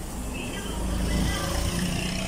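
Low, steady rumble of a motor vehicle running close by, with a jumble of higher calls over it that grows louder about a second in.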